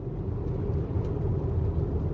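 A steady low rumble of background noise, growing slightly louder, with no other distinct sound in it.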